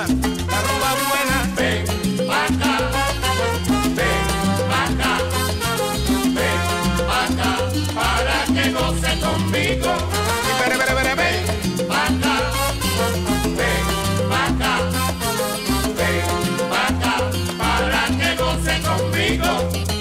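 Instrumental passage of a salsa recording, with no singing: a steady dance beat with bass, percussion and pitched instrumental lines.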